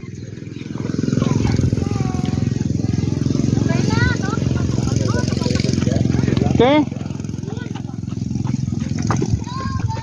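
A motor vehicle engine runs steadily for several seconds, dropping back a little about seven seconds in, with a few brief voices over it.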